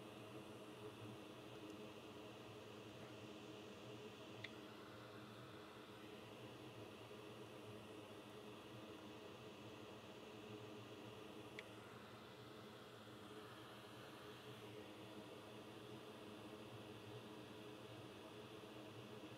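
Near silence: faint steady room hum and hiss, with two tiny clicks, about four and a half and eleven and a half seconds in.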